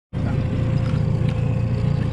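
Boat motor running steadily: a low rumble with a steady hum above it.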